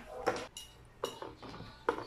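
A few light clinks and taps of a ceramic plate and fork as spring rolls are handled on the plate, with a faint ring after the clinks.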